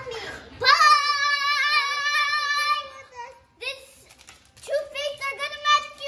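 A young boy's voice singing or chanting long held notes without words, wavering slightly in pitch, in two loud phrases with a short break about halfway through.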